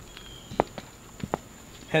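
A person's footsteps: four sharp steps, unevenly spaced, over a faint steady high-pitched background tone.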